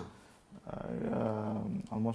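A man's voice holding one low, rough, drawn-out vocal sound for over a second, like a long growly 'uhhh' or hum, after a brief pause.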